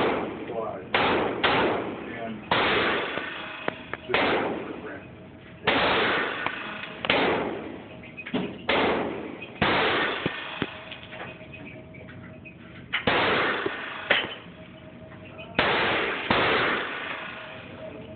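Semi-automatic pistol shots in an indoor range, about a dozen at uneven gaps of one to three seconds, each shot followed by a long echoing tail.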